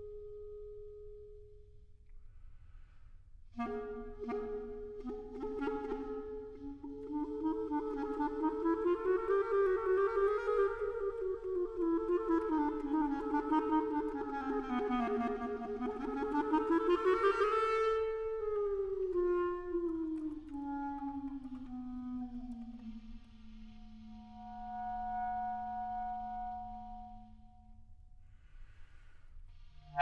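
Solo clarinet playing a slow concert étude. A held note fades, then from about 3.5 s two pitches sound at once, swelling and bending together with a fluttering waver. Near 18 s they slide down into a long low held note.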